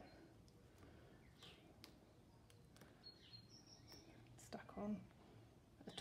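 Near silence: a few faint soft rustles and light ticks of a paper cut-out being pressed by hand onto a glued card backdrop.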